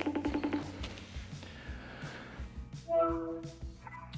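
Phone video-call tones over background music: a quick, rapidly pulsing electronic tone as the call starts, then a held electronic chime about three seconds in as the call connects.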